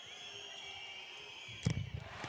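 Faint arena crowd noise with a few steady high tones, then a single sharp thud near the end as the handball is shot.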